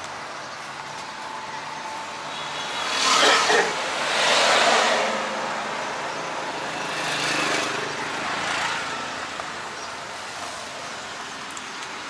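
Road and engine noise heard from inside a tuk-tuk cabin as it rides along, a steady rush that swells louder a few times, most strongly a few seconds in.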